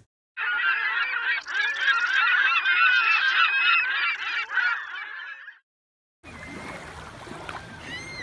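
A large flock of geese honking, many calls overlapping into a dense chorus that cuts off abruptly after about five seconds.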